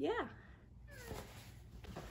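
A young girl's short, high-pitched "yeah" at the start, rising then falling in pitch, followed by a quiet room.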